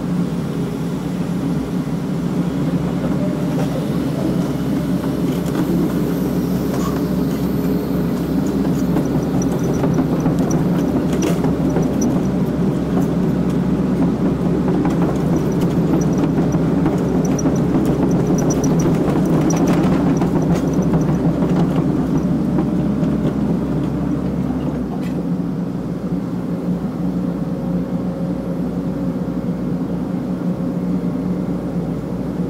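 Excavator's diesel engine and hydraulics running steadily, heard from inside the operator's cab as the machine moves with a suspended load; the hum eases a little near the end.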